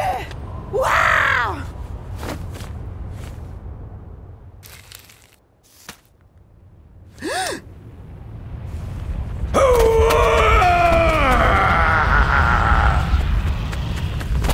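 A cartoon character's wordless vocal cries over a continuous low rumble: short falling exclamations in the first seconds, a brief cry at about seven seconds, then a long, wavering yell that drops in pitch from about nine and a half to thirteen seconds, the loudest part.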